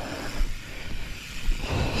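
Wind buffeting the microphone of a helmet-mounted GoPro action camera: a steady rushing noise with low rumble, swelling briefly near the end.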